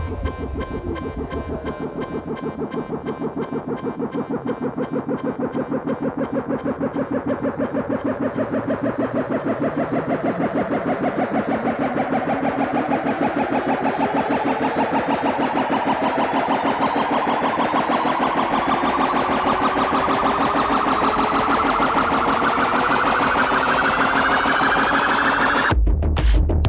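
Electronic dance music build-up from an electro-house DJ mix. The kick and bass drop out and a rapidly pulsing synth rises steadily in pitch and loudness. The heavy bass comes back in right at the end.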